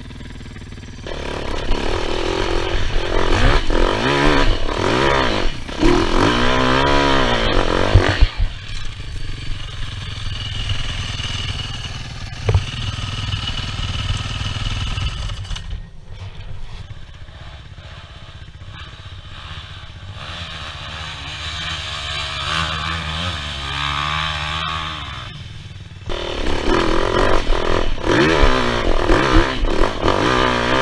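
Enduro dirt bike engine revving hard in repeated surges for the first several seconds, running lower and steadier through the middle, then revving hard again in the last few seconds.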